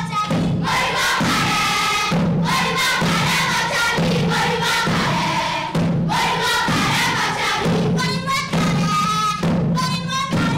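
A children's choir singing a Gusii folk song in unison, in phrases that break about every second, over a thudding beat.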